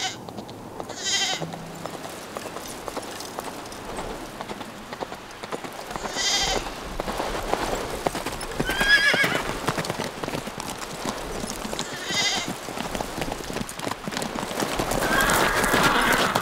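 A horse galloping over hard, dry ground, with a run of hoofbeats throughout. Sheep bleat four times over it.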